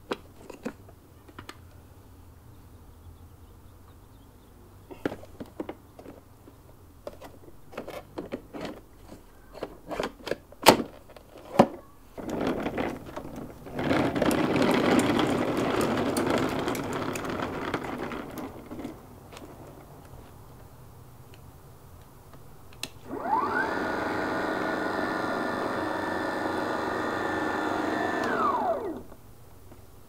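Clicks and knocks as the battery and adapter are seated and the lid is shut, then a rushing noise for about six seconds. Near the end, the Ryobi dethatcher's electric motor spins up with a rising whine, runs steadily for about five seconds and winds down, running with no blade fitted.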